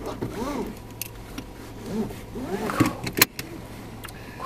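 Car cabin sound: a steady low hum of the car running, with a faint murmured voice twice and two sharp clicks near the end.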